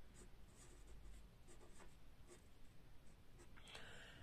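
Marker pen writing on paper: faint, short scratching strokes.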